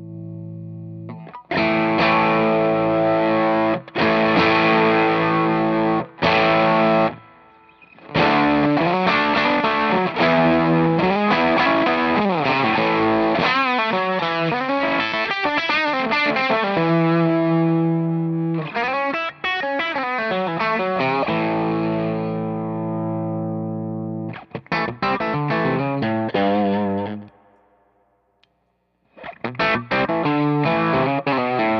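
Electric guitar played through a Cusack Screamer Fuzz Germanium fuzz/overdrive pedal: distorted, fuzzy riffs and chords with held notes and string bends, broken by short stops. Near the end the playing stops for about a second and a half, then starts again.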